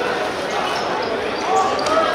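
A football bouncing and being kicked on a hard outdoor court, with a sharp ball strike near the end, amid men's voices calling out across the pitch.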